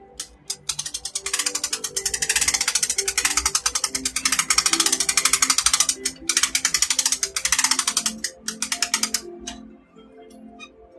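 Fast, even mechanical clicking like a ratchet being turned, in long runs that break off briefly about six seconds in and again near the end, over faint background music.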